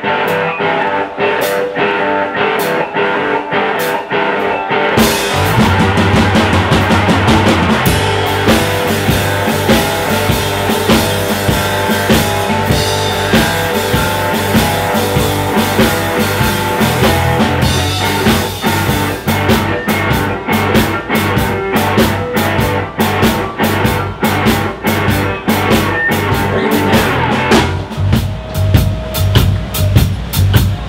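Live electric blues band: a cigar box guitar plays a rhythmic riff on its own, then bass guitar and drums come in about five seconds in and the band plays on together.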